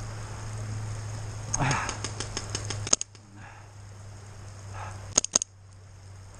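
Paintball markers firing: a quick string of shots, several a second, about a second and a half in, then three loud sharp shots in fast succession about five seconds in.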